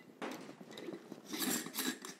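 Metal lid being screwed onto a glass mason jar: short gritty scrapes of the threads, louder near the end.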